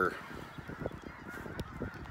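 A flock of geese honking, a continuous chorus of many overlapping calls.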